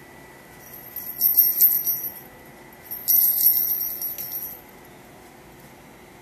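A small jingle bell on a cat toy jingling in two shaken bouts, each a little over a second, with a short pause between; the second bout is slightly longer.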